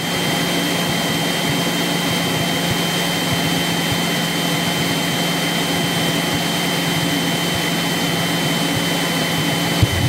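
Single-engine propeller airplane's engine and propeller droning steadily, heard from inside the cockpit on short final approach, with a thin, steady high-pitched whine over the drone.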